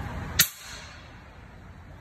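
A single sharp shot from an air rifle about half a second in, with a brief echo off the concrete garage around it.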